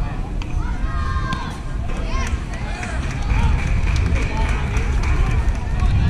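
Indistinct distant voices of players and onlookers calling out at a youth baseball game, over a steady low rumble. A thin, steady high tone is held for a couple of seconds in the second half.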